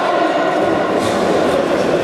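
Steady, echoing din of a futsal game in a sports hall, with a few faint knocks about halfway through.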